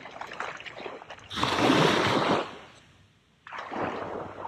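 Small waves washing up on a sandy shoreline, with a loud rush of water noise about a second and a half in that lasts about a second, then a second wash starting near the end.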